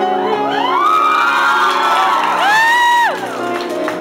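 Grand piano playing on, with high whooping voices over it: long whoops that rise, hold and fall, the loudest one about two and a half seconds in.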